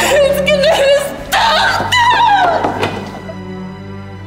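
A woman's anguished wailing over sustained dramatic background music, with a long falling cry about halfway through before it fades.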